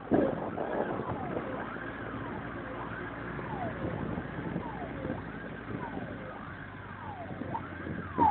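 Fire-engine sirens wailing, several rising and falling tones overlapping and repeating about once a second, over a steady low rumble of vehicle engines and road noise.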